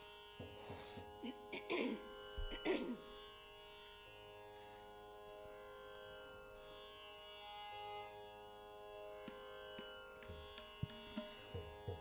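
Faint, steady tanpura drone holding the tonic of the raga before the singing begins. A few brief scraping strokes come in the first three seconds, and soft low taps come near the end.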